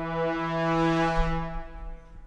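Sampled brass ensemble from the Native Instruments Brass Ensemble Kontakt library playing one held chord. It swells to its loudest about midway and fades out near the end.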